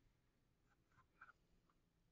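Near silence: room tone with a low hum, and a few faint clicks about a second in.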